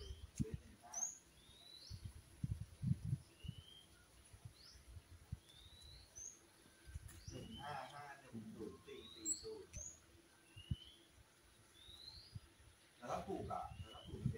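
Short rising bird chirps repeated about once a second, with a few low thumps in the first three seconds and faint voices in the background.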